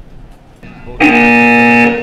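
Loud signal horn on an archery range, sounding one steady, several-toned blast of about a second that starts and stops abruptly.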